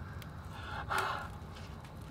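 A person's sharp, breathy gasp about a second in, over a faint background hiss.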